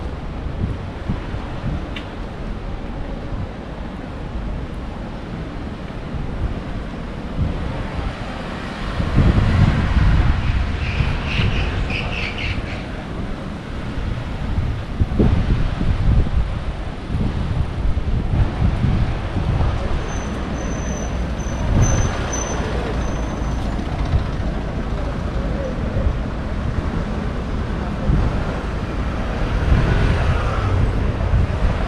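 Street traffic ambience: cars driving past and moving through a junction, with a louder spell of passing traffic about a third of the way in.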